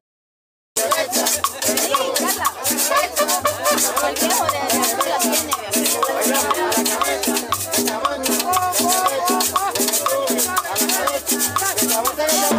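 Live cumbia band playing: timbales and hand drums, the rasp of a metal scraper, an upright bass and horns, at a brisk steady beat. The music cuts in after a short silent gap under a second in.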